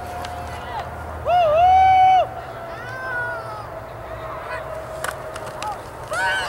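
Spectators shouting long, high-pitched calls as a football play runs: one loud drawn-out shout lasting about a second, starting about a second in, then a shorter, higher call around three seconds in.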